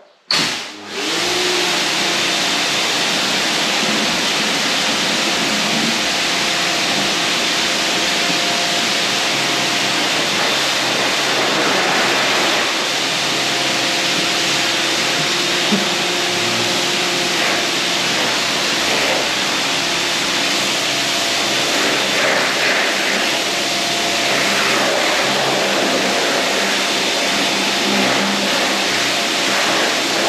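STIHL pressure washer running, its jet of water spraying onto concrete walls, a steady loud hiss with the machine's motor under it. It starts abruptly just after the opening and runs without a break.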